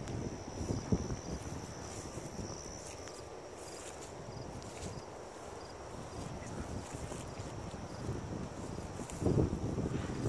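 Wind buffeting a phone's microphone outdoors, in low gusts that pick up about a second in and again near the end.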